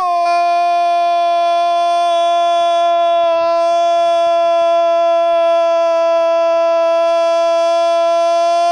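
A man's long, drawn-out shout of 'gol', one loud note held at a steady pitch throughout.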